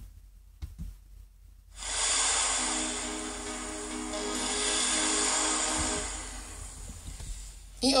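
Playback of an imported MIDI song through MuseScore 2's built-in synthesizer, a multi-instrument arrangement with piano chords, bass and oboe parts. It starts about two seconds in, runs steadily with held tones, and fades out just before the end.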